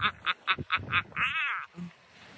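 A man laughing hard: a rapid, rhythmic string of cackles about five a second, ending a little over a second in with a higher, drawn-out laugh.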